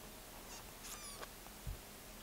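Quiet room tone with a few faint clicks and a soft thump about one and a half seconds in, from fingers tapping an iPad touchscreen.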